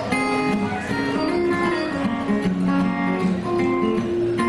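Two acoustic guitars playing together in a live duet: a busy run of picked single notes over strummed chords.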